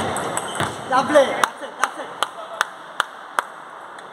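A short shout about a second in, then a table tennis ball bouncing with six sharp clicks at a steady beat of about 0.4 s, each fainter than the last. The rally has just ended.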